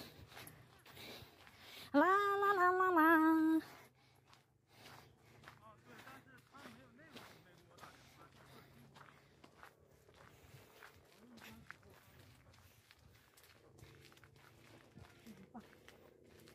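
Footsteps on a dirt trail, with a woman's voice holding one long, loud note for about a second and a half near the start; after it only faint steps and rustling.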